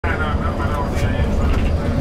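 Steady low rumble of a moving coach bus heard from inside the cabin, with faint voices talking underneath.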